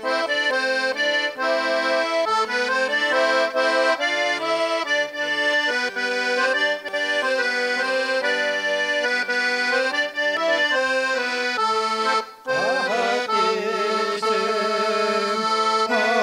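Garmon (Russian button accordion) playing a lively folk tune in chords and melody. Just after twelve seconds in, following a short break, a man's voice starts singing with vibrato over the accordion.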